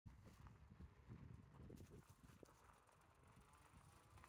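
Near silence, with faint irregular low thumps and a few light knocks from moving along a dirt road, busiest in the first two seconds.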